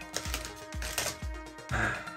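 Soft background music with the crinkle and light clicks of a foil trading-card booster pack being pulled open and its cards slid out.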